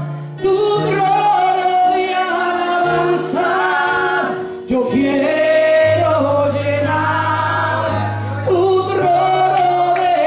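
A woman singing a gospel song into a microphone, amplified, over an accompaniment of long held low notes that change every second or two.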